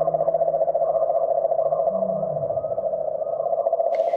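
Ambient synthesizer drone: a steady, quickly fluttering mid-pitched tone, with a lower tone beneath it that fades out about halfway through.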